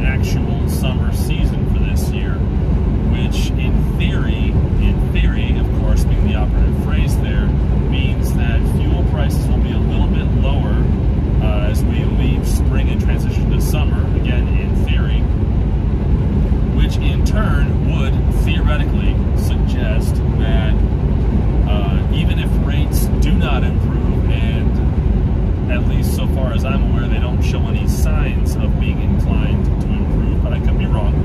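Steady, loud engine and road noise inside a moving semi-truck's cab, with a man's voice talking over it.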